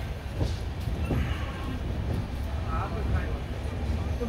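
LHB passenger coach running on the track through a station yard: a steady low rumble from wheels on rail, with a few short clicks as the wheels pass over rail joints.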